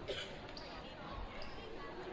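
A basketball bounced on a hardwood gym floor: a sharp knock just after the start, then a dull thud just past the middle, over indistinct voices and the hum of the gym.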